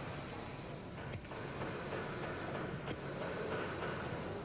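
Steady background hum and hiss with a couple of faint, brief clicks.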